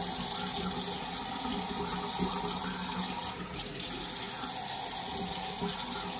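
Tap water running steadily into a sink.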